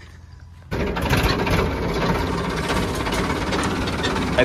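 Sonalika tractor's diesel engine running loudly, heard close up from the driver's seat, with a dense clattering rumble that comes in suddenly about a second in and then holds steady.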